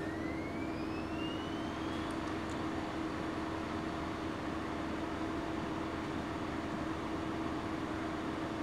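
Steady machine hum over an even background noise, with a faint whine rising in pitch over the first two seconds.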